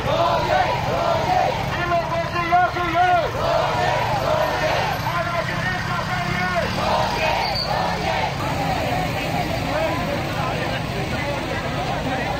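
A street protest crowd chanting and shouting, many voices overlapping, over the low steady hum of motorcycle engines moving with the march.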